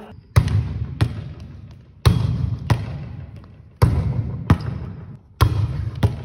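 Volleyball forearm-passed against a gym wall over and over: four pairs of impacts, each a heavy thump followed about two-thirds of a second later by a sharper smack, with the hall ringing after each.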